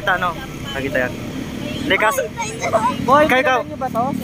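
Several people talking in short phrases, over a steady low rumble of road traffic.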